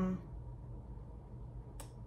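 A pause in a woman's talk: her drawn-out 'um' trails off, then low steady room hum, and a single brief sharp mouth click near the end, just before she speaks again.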